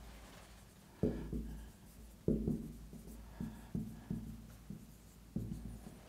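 Whiteboard marker writing on a whiteboard: a run of short, sharp strokes and taps, some with a faint squeak.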